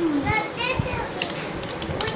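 A child's voice for about the first second, then a run of short clicks from computer keyboard keys as a search is typed.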